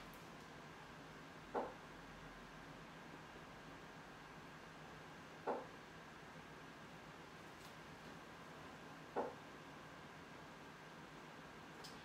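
Quiet room with a steady faint hiss, broken by three short soft taps about four seconds apart.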